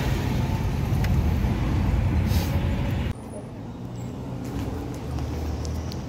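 Car cabin noise from a moving car: a steady low road and engine rumble. About three seconds in it cuts off abruptly to a quieter low hum.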